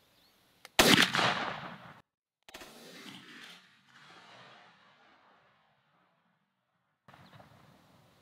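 A single 20-gauge shotgun blast about a second in, from a Tristar Cobra III pump shotgun firing a 3-inch, 1 1/8 oz Hevi-Bismuth load of #4 shot, its report fading away over the next few seconds.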